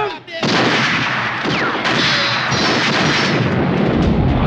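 Flamethrower firing in a film soundtrack: a sudden loud rush of burning flame that starts about half a second in and keeps going steadily.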